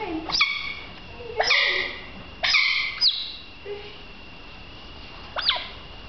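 Juvenile smooth-coated otters calling as they play-wrestle: about five high-pitched squeaky calls, some short and sweeping up, some held for about half a second.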